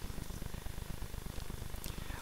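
Room tone of a lecture hall: a low, steady rumble with a faint hiss above it.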